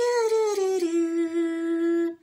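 A voice humming one long held note that steps down to a lower pitch about a second in.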